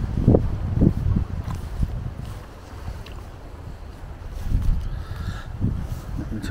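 Wind buffeting the camera microphone outdoors: an uneven low rumble in gusts, stronger near the start and again near the end, easing off in the middle.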